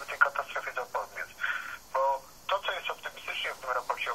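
A person talking over a telephone line, the voice thin and narrow-band.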